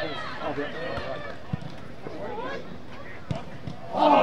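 Players' distant shouts on an open football pitch, with two sharp thuds of a football being kicked: one about a second and a half in, and a harder strike just over three seconds in as the shot is taken.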